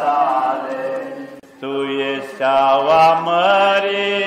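A man's voice singing an Orthodox hymn to the Mother of God into a microphone, in long held notes with slow pitch slides. There is a short breath break about a second and a half in.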